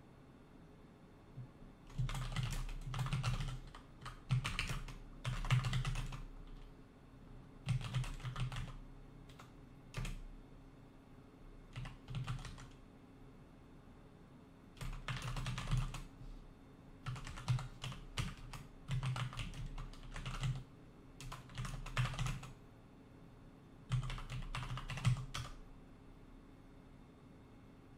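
Typing on a computer keyboard in about ten short bursts of key clicks, separated by pauses of a second or two.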